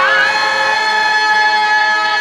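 A sung phrase ends with a falling glide at the very start, then the harmonium accompaniment holds a steady chord.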